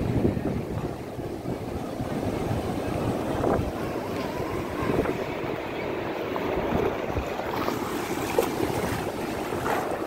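Sea surf washing in over a flat sandy beach, a steady rush of breaking waves, with wind buffeting the microphone.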